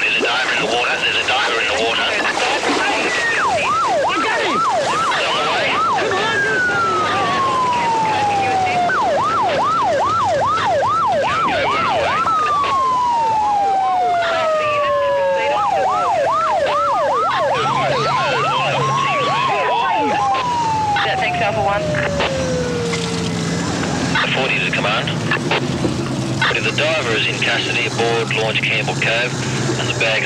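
Police electronic siren sounding a fast yelp, about three rises and falls a second, broken several times by a slow falling wail. A low steady engine hum comes in about halfway, and the siren stops about three-quarters of the way in.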